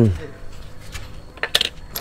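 A few brief metallic clinks about one and a half seconds in, and another just before the end, from loose steel lug nuts and a brake pad being handled on a concrete floor.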